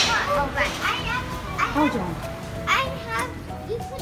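Children's voices, chatter that no words were picked out of, with background music joining about halfway through as steady held notes.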